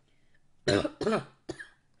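A woman coughing three times in quick succession, starting about half a second in, the last cough short.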